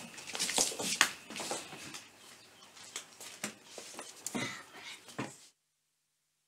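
A child getting up from a sofa and hurrying off: scattered light footsteps, knocks and clothing rustle, then the sound cuts off suddenly near the end.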